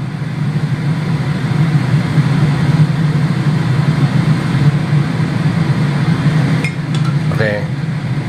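Steady low hum of a kitchen fan running, with a light hiss over it. A few light clicks near the end, from metal tongs against the wok.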